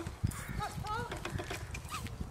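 Hooves of a cantering horse thudding in an irregular rhythm on a soft arena surface. About halfway through, a short wordless voice-like call rises and falls in pitch.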